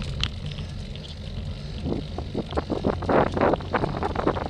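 Wind buffeting an action camera's microphone on a road bike climbing, over a steady low rumble, with stronger gusts in the second half.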